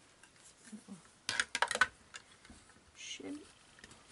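A quick clatter of hard plastic clicks about a second in, as the die-cutting machine's clear plastic cutting plate is handled and laid over the die and felt; a shorter knock near the end.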